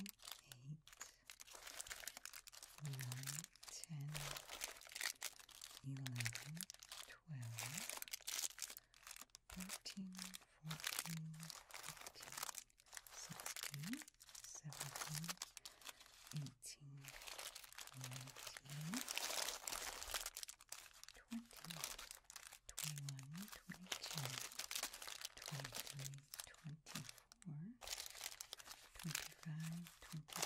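Glossy plastic candy wrappers crinkling continuously as hands sift through and slide individually wrapped miniature chocolates (peanut butter cups and candy bars) off a pile.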